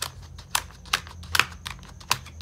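Planner pages clicking as they are worked off and onto the plastic discs of a Happy Planner disc-bound planner: a run of irregular sharp clicks, the loudest about one and a half seconds in.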